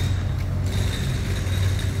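Steady low rumble of a motor vehicle engine and road traffic, with no clear single event.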